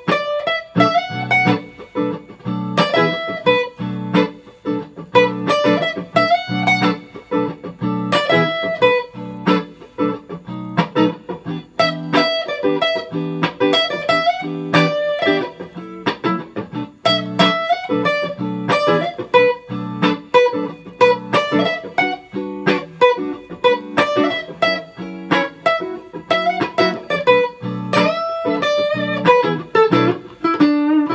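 Electric guitar (a hardtail Kanji Stratocaster through a Fender Hot Rod Deluxe amp) playing a minor pentatonic blues solo with bent notes over a minor blues backing track.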